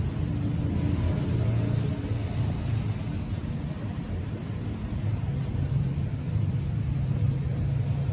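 Steady low rumble with a faint hum underneath.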